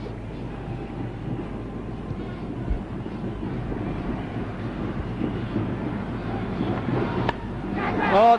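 Stadium crowd noise from a cricket television broadcast: a large crowd's steady murmur, growing a little louder near the end.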